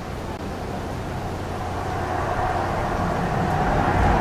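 Low rumbling noise swelling up steadily after silence, the sound-effect intro at the very start of a pop song, before any beat or voice comes in.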